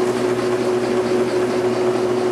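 Bourg AE22 booklet-making line (collator with stapler, folder and trimmer) running: a steady machine hum with one constant tone held throughout.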